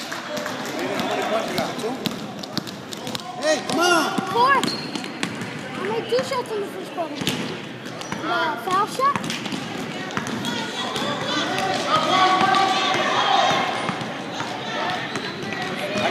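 A basketball bouncing on a gym floor during a children's game, with shouting voices in the hall at intervals.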